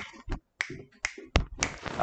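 A run of about six sharp finger snaps, roughly three a second.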